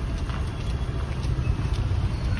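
Footsteps on a tiled pavement, several faint, sharp steps, over a steady low rumble of road traffic.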